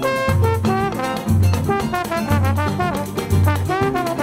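Instrumental samba passage: a trombone plays a sliding melody over the band, with a deep surdo drum beating about once a second.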